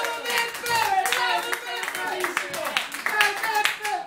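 Audience applauding in a small room, with voices calling out over the clapping.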